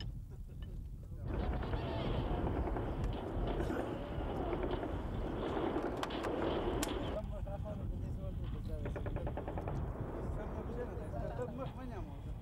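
Men's voices over a steady low rumble, with a few sharp distant gunshots. About nine seconds in, a short rapid run of shots like automatic-weapon fire.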